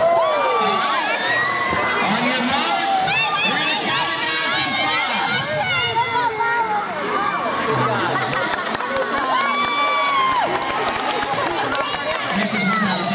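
A crowd of young children shouting and cheering in a school gym, many high voices overlapping, with a long held shout near the end.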